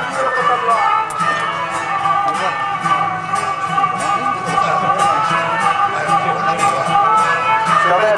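Traditional Balochi string accompaniment playing an instrumental passage: a long-necked lute plucked in a steady repeated stroke over a held low drone, with a sustained melody line above.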